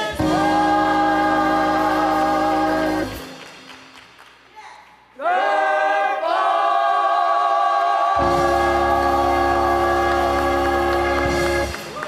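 Gospel choir singing long held chords with a steady low accompaniment underneath. The first chord fades out about three seconds in; after a short gap the voices swell into a new held chord that stops just before the end.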